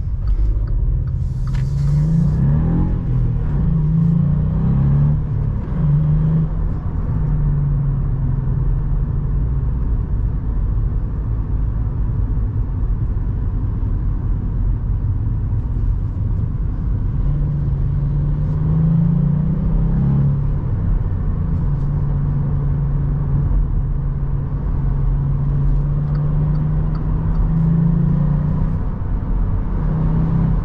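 Volkswagen up! GTI's turbocharged 1.0 TSI three-cylinder engine heard from inside the cabin under low road and tyre rumble: it pulls hard in the first few seconds, rising and falling in pitch, eases back to a quieter cruise, then picks up again about halfway through and holds a steady drone. A short hiss sounds about a second and a half in.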